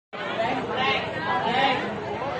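Several people talking over one another: crowd chatter.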